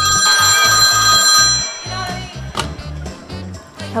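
Telephone ringing: one ring of steady high tones lasting about a second and a half, over background music with a pulsing bass beat.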